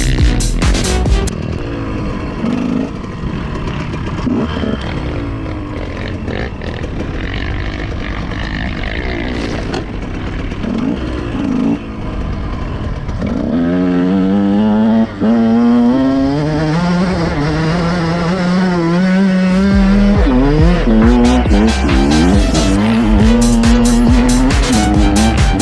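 KTM dirt bike engine revving, its pitch rising and falling with the throttle, loudest in the second half, mixed with a music track with a steady beat that is strongest near the start and again near the end.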